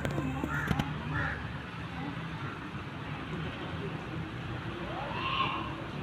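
Bird calls: a few short, harsh caw-like calls in the first second and a half, then a single rising call near the end.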